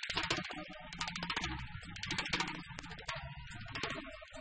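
Jazz drum kit playing busy, rapid snare and cymbal strokes over an acoustic bass line.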